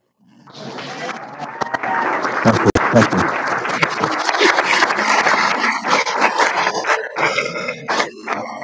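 A roomful of people applauding, dense clapping mixed with voices. It swells in from silence about half a second in and thins out into separate claps near the end.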